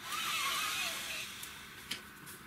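A person's long deep exhale, a breathy rush that fades away over about a second and a half, with a faint click near the end.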